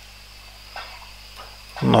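Faint computer-keyboard typing, a few soft key clicks, over a steady background hiss with a faint high-pitched whine.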